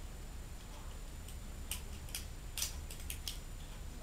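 Plastic parts of a Transformers Animated Deluxe Bumblebee toy clicking as they are handled and moved, about seven short, sharp clicks in irregular succession through the middle, over a low steady hum.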